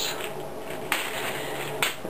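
Two short sharp clicks about a second apart, from a small plastic bag of plastic Molex fan connectors being handled.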